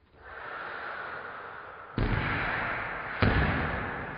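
Sound-effect impacts over a title card: a rising noise swell, then two heavy booming hits about two seconds and three seconds in, each dying away slowly.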